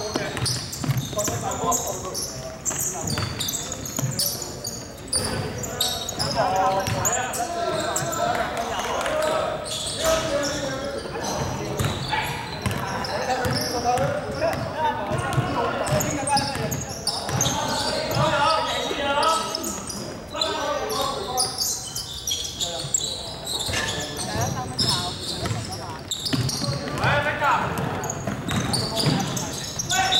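A basketball bouncing on a hardwood gym floor during play, among players' and spectators' voices echoing in a large sports hall.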